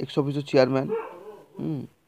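A person's voice speaking in short, drawn-out syllables, ending with a brief falling utterance near the end.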